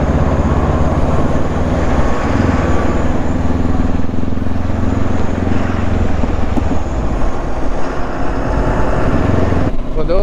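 Honda CB500X's parallel-twin engine running under acceleration as the bike picks up speed, heard from the rider's seat. The engine note changes about two seconds in and again about seven seconds in.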